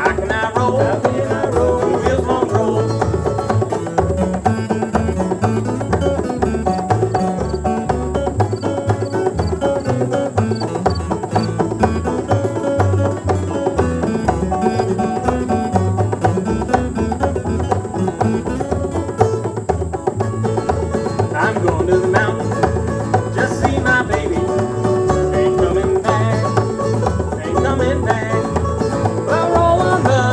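Live acoustic string band playing an instrumental passage, with banjo and acoustic guitar picking over upright bass and a hand drum, continuing steadily without vocals.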